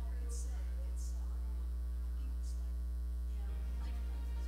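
Steady electrical mains hum: a low, unchanging drone with a stack of overtones, much louder than the faint sounds beneath it.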